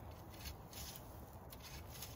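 Faint low background rumble with a few soft rustles or taps about a second and a half in; no distinct sound event.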